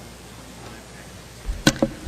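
Quiet room tone between speakers, then near the end a low thump followed by two sharp clicks.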